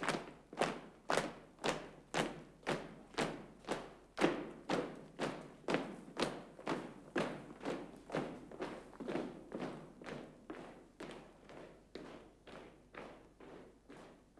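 A column of men marching off in step, their boots landing together about twice a second and fading steadily into the distance.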